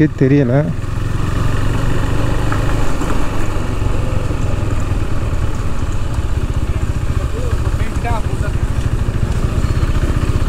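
KTM 390's single-cylinder engine running steadily at low revs as the motorcycle rolls slowly through traffic.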